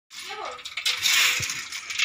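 Dozens of small boiled remis clam shells rattling and clattering against each other and the pan as they are stirred and scooped out with a slotted spoon, loudest about a second in.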